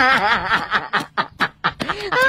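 A person snickering: a laugh that breaks into a quick run of short chuckles about half a second in, growing fainter near the end.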